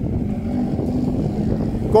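Steady low rumble of a car engine running, with a faint steady hum.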